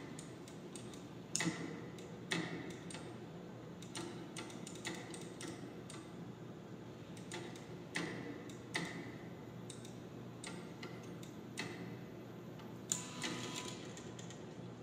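Irregular sharp clicks, about one a second, from a rat pressing the lever of a homemade operant conditioning chamber, with a louder cluster of clicks near the end.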